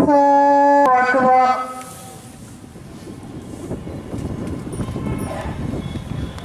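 Prayer leader's Arabic chant: a long held note that steps to a new pitch and ends about a second and a half in. After it, a low, noisy murmur and rustle of the large congregation that slowly grows louder.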